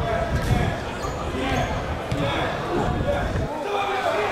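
Live pitch-side sound of a football match in play: players shouting and calling to each other, with a few dull thuds of the ball being kicked.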